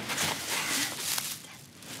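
Rustling of a cloth bag and a plastic bag being rummaged through, a run of soft rustles in the first second, then quieter.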